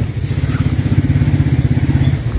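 An engine running steadily close by, with a fast, even low pulse.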